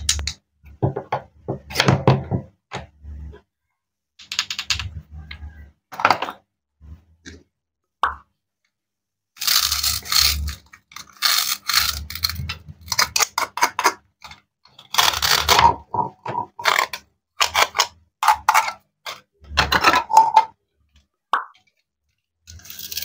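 Wooden toy knife cutting plastic toy fruits on a wooden cutting board: scattered clicks and knocks, then longer scraping bursts in the second half as the fruit halves are pulled apart and handled.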